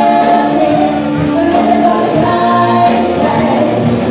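Live pop band with electric guitar, keyboards and drums, several singers singing together in held notes over it.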